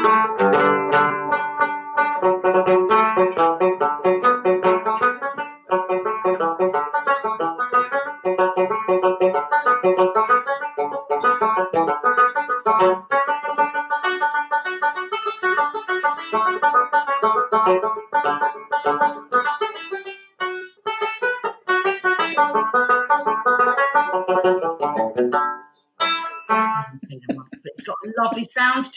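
A tenor banjo playing a fast Irish tune: a quick, unbroken run of picked single notes, with one brief break about 20 seconds in, stopping near the end.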